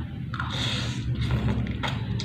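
A person slurping spaghetti noodles from a fork, a hissy suck lasting about half a second, followed by a short sharp click near the end.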